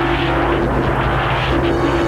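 Dark electronic synthesizer soundtrack: a steady low drone under a dense wash of noise, with a held mid-pitched tone sounding twice.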